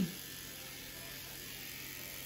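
Electric hair clippers running steadily with an even, faint buzz while trimming a thick beard.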